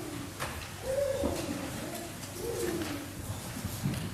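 A small child's voice cooing and babbling in short, falling sing-song phrases, with a few faint knocks.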